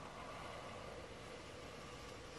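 Black felt-tip marker drawing on paper, a faint, steady scratching as an outline is traced.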